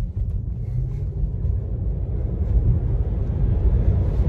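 Low road and tyre rumble inside a Tesla's cabin as it accelerates hard, growing steadily louder with speed; there is no engine note.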